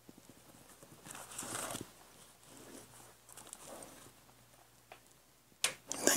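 Faint rustling and soft tapping as clear acrylic stamps are handled and pressed onto a paper index card, with a sharp click near the end.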